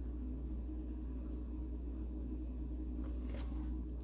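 Quiet room tone with a steady low electrical hum, and one faint click about three and a half seconds in as a plastic action figure is handled on the table.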